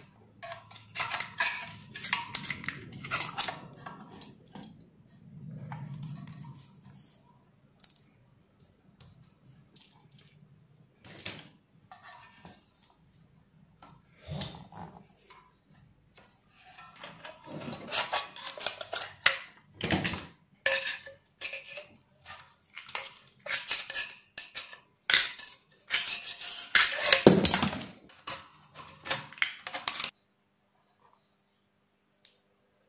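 Metal parts of an aluminium LED flood light knocking, clinking and rattling as the fixture is handled and taken apart. The clanks are irregular, with the loudest clusters late on.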